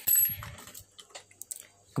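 A short, light metallic clink with a brief high ring as a small component is handled on a circuit board, followed by a few faint ticks.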